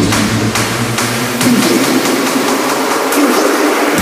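Electronic trap beat made on the Drum Pads 24 app, in a build-up section: a dense, steady wash of noise with the deep bass thinning out and dropping away over the last two seconds.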